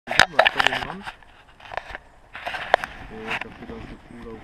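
A person's voice speaking indistinctly in short bursts, with a few sharp clicks in between.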